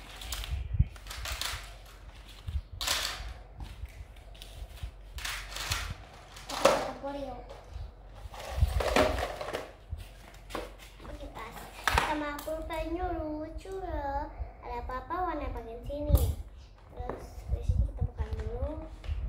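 Sharp knocks and clatter of plastic and wooden toys being handled and set down on a table. About two-thirds of the way through, a young girl's voice rises and falls for a few seconds.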